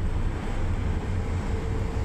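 Cabin noise inside a Toyota SUV moving at highway speed: a steady low rumble of tyres, engine and wind, with a faint steady hum joining about half a second in.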